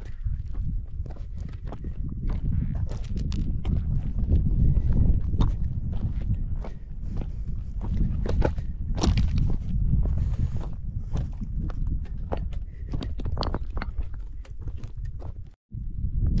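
Footsteps on a rocky trail of loose stones and gravel, a string of irregular sharp steps, with wind rumbling on the microphone.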